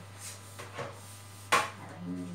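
Metal baking trays handled on a kitchen counter: a couple of light knocks, then one sharp metallic knock about one and a half seconds in, over a steady low hum.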